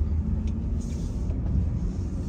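Steady low rumble of a car driving in city traffic, heard from inside the cabin, with a brief soft hiss about a second in.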